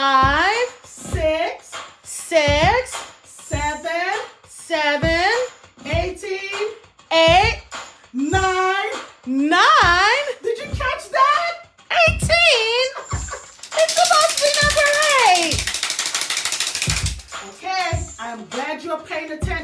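A woman and a child counting aloud in a sing-song way, one number about every second, with each number echoed. Near the end, about three seconds of loud hissing noise sit under a voice that falls in pitch.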